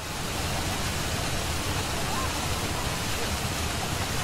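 Steady rush of pouring, splashing water.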